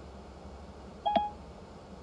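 A single short electronic beep from Siri through the CarPlay head unit about a second in, the chime that follows a spoken reply to Siri, over a faint low steady hum.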